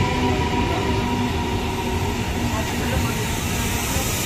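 Eastern Railway electric multiple-unit local train running along a station platform: a steady rumble of wheels and motors with a few faint steady tones over it.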